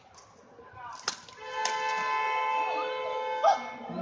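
Badminton rally: a sharp racket strike on the shuttlecock about a second in and another, the loudest sound, near the end. Between them a steady held sound of several tones together, with short gliding squeaks over it.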